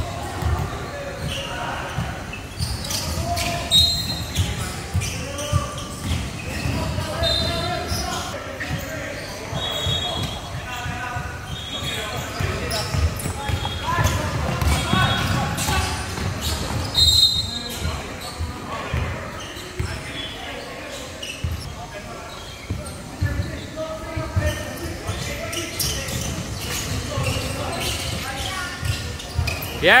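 Basketball game on a hardwood court in a large echoing hall: the ball knocking on the floor as it is dribbled, several short high sneaker squeaks, and the shouting and chatter of players and spectators.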